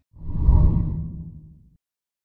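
A deep whoosh sound effect for the channel's logo animation: it swells quickly, peaks about half a second in and fades away over the next second.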